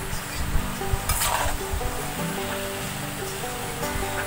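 Sliced vegetables frying in a metal karahi, stirred with a metal spatula: sizzling with a few scrapes and knocks of the spatula against the pan, under background music.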